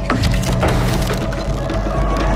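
Trailer sound effect: dense crackling over a steady low drone.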